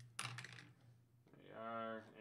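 A short burst of clicking on a computer keyboard, then a man's voice holding a long, steady drawn-out "and…" on one pitch, over a low steady electrical hum.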